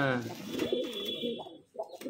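Domestic pigeons cooing in a cage: a loud low coo at the start, then a run of wavering, rolling coos, a brief pause and another coo near the end.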